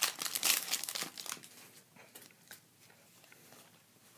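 Foil wrapper of a Pokémon trading-card booster pack crinkling as it is torn open by hand. The crinkling is dense for about a second and a half, then dies down to faint rustling.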